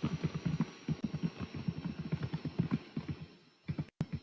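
Keyboard typing picked up by a participant's open microphone on a web-conference call: rapid irregular key taps, about eight to ten a second, with a short pause near the end.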